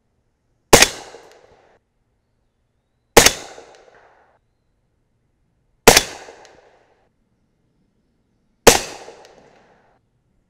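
Four suppressed shots from an AR-style rifle in 300 AAC Blackout firing subsonic 220-grain Sierra MatchKing handloads, about two and a half seconds apart. Each is a sharp report that dies away over about a second.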